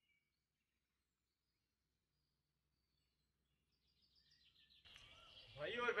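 Near silence with a few faint, high bird chirps for about four seconds. Then outdoor ambience with birdsong cuts in, and a man starts speaking just before the end.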